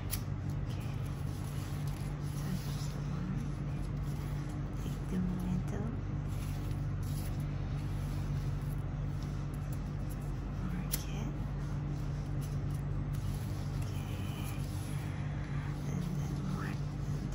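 A steady low hum throughout, with faint rustling of grosgrain ribbon being handled. There are two sharp clicks, one right at the start and one about eleven seconds in, from a disposable spark-wheel lighter being struck to mark the ribbon.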